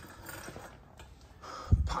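Quiet shop room tone with faint rustling, ending in a short, low thump on the microphone as speech starts again.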